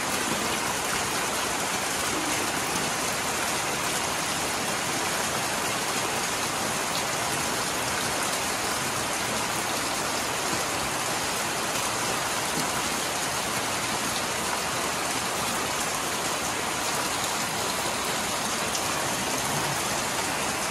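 Steady heavy rain falling on roofs and a wet concrete passage. A stream of rainwater from a roof gutter pours into a full plastic drum and splashes over its rim.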